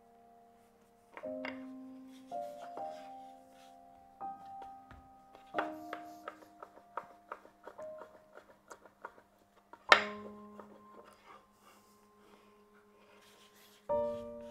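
Soft background piano music, single notes and small chords struck a few at a time and left to ring, with the loudest chord about ten seconds in.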